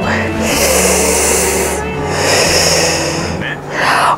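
A woman breathing out heavily twice in long, breathy breaths, in tears and overcome after an emotional song, with faint music lingering underneath.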